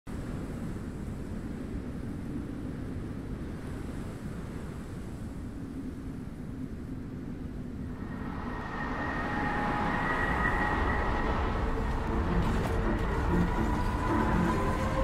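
Deep, steady rumbling noise of an intro soundtrack, joined about eight seconds in by sustained, eerie music tones that make it louder.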